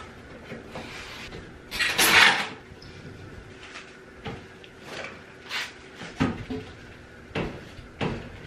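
A paper towel rubbing and wiping across the glass walls of a glass terrarium, with scattered light knocks against the glass and frame; the loudest rub comes about two seconds in.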